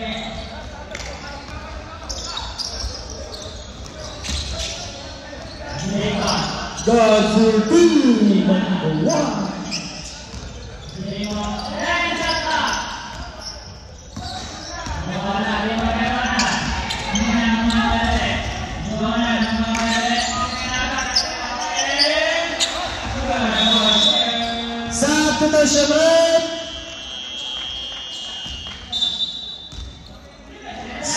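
Live basketball play on a hardwood gym floor: the ball bouncing, with short knocks throughout and players shouting and calling out, all echoing in a large hall.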